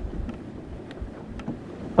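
Low, steady rumbling background noise, like wind and sea, with a few faint ticks.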